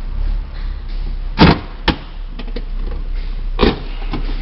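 The 2014 Ford Taurus's 3.5-litre V6 idling, heard from inside the cabin as a steady low hum. Two loud short knocks sound, one about a second and a half in and one near the end, with a sharp click between them.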